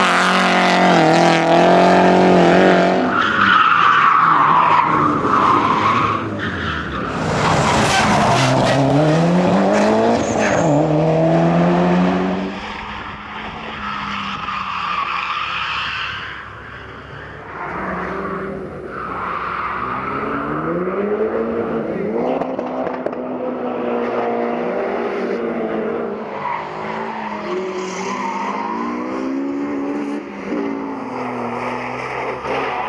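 Rally cars driven hard through corners one after another, engines revving up and down through the gears, with tyre squeal as they slide.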